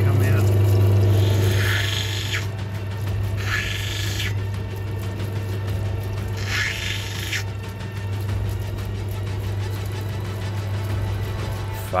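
Steady hum of a water-fed lapidary grinding wheel running, broken by three short stretches of hiss, each about a second long, over background music.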